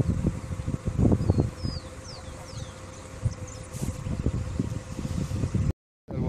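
Wind buffeting the microphone in uneven gusts, with a few short, high bird chirps about two to three and a half seconds in. The sound drops out briefly just before the end.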